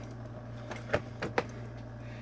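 Keurig 2.0 brewer's plastic lid being pressed down over a K-cup and latching shut: a few sharp clicks about a second in.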